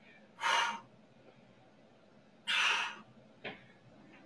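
A woman's two sharp, breathy exhalations about two seconds apart, with a short fainter breath just after the second, as she breathes hard through an exercise set.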